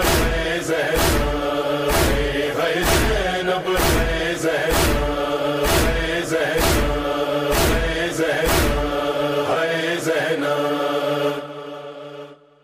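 Male reciter chanting an Urdu noha over a sustained vocal drone, with a steady chest-beating (matam) beat about once a second. The recitation fades out near the end.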